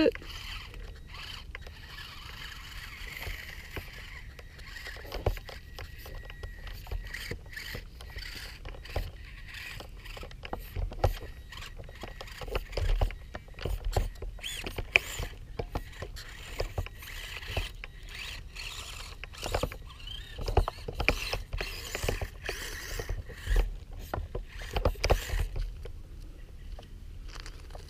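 Losi Micro 1:24 rock crawler crawling over rocks and gravel: its small electric drive whirs while its tyres and chassis clatter on the stones in irregular clicks and knocks.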